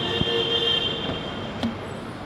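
A steady, high-pitched metallic squeal over city street noise, stopping about one and a half seconds in.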